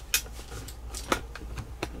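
Studio headphones being handled and put on close to the microphone: a few sharp, irregular clicks and rustles over a low steady hum.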